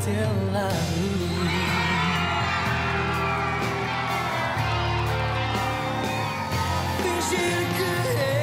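Pop-rock band playing live, with a steady bass line under a high, wavering melody.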